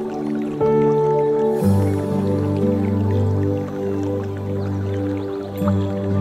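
Slow new-age relaxation music: soft sustained chords, with a deeper bass note entering about a second and a half in.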